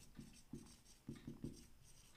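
Faint marker pen writing on a whiteboard: a quick run of short strokes as a word is written out.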